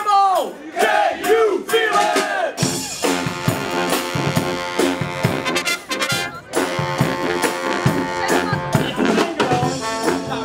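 Dweilorkest (Dutch street brass band) playing, with sousaphone, trombones, trumpets and baritone horns over drums. It opens with a few short swooping notes, and then the full band comes in about two and a half seconds in and plays on loudly.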